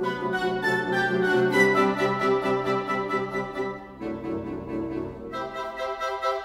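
Orchestral woodwind section alone, from piccolo and flutes down to bassoons and contrabassoon, playing a pulsating texture of short staccato repeated eighth notes. The upper voices thin out about four seconds in.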